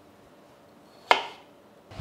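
A single sharp chop about a second in: a kitchen knife cutting through a peeled raw potato and striking a wooden cutting board.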